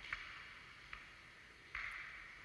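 Faint footsteps walking through a gallery, played back through a phone's small speaker: three soft steps under a thin hiss.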